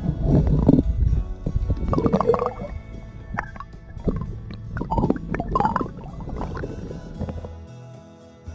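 Water sloshing and gurgling in loud irregular bursts, which die away near the end, over steady background guitar music.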